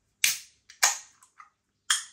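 Ring-pull on an aluminium beer can being opened: three sharp cracks as the tab breaks the seal, each with a short fading tail, the last near the end.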